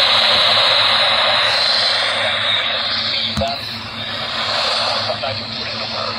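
Prunus J-125 pocket AM/FM DSP radio tuned to 750 kHz on AM, its speaker giving heavy static hiss with a station's talk faintly coming through. The hiss eases a little about four seconds in, and there is one short knock a little past three seconds.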